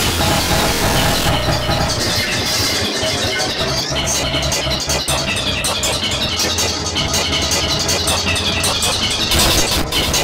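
Loud, heavily distorted, effects-processed music and audio, a dense noisy wash with a steady low rumble and rapid flickering, with no pause.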